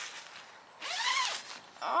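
A zip pulled in one quick stroke about a second in, its buzzing pitch rising and then falling.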